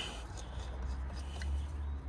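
Faint handling sounds of a propeller being twisted and hand-tightened onto a drone motor, with one small click about one and a half seconds in, over a low steady rumble.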